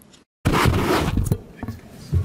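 The sound cuts out completely for a moment, then a loud burst of rustling and scraping right at a microphone, as from papers, a laptop or the mic itself being handled; it fades after about a second.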